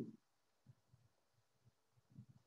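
Near silence: room tone in a pause between spoken phrases, with a few faint, short low thumps.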